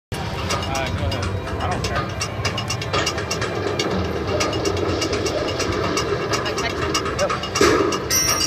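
Casino floor din: many voices chattering under slot machine jingles and clicks. A louder burst of sound comes near the end as the machine's bonus screen comes up.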